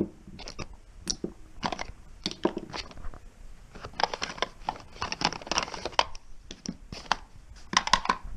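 Makeup being handled and put into a zippered cloth cosmetic bag: irregular rustling and small clacks of plastic compacts and tubes, with a sharp knock at the very start.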